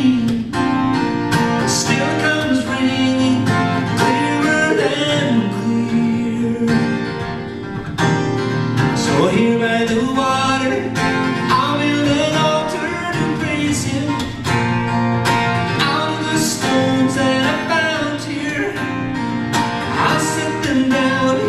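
Steel-string acoustic guitar strummed in a steady rhythm, with a man singing over it.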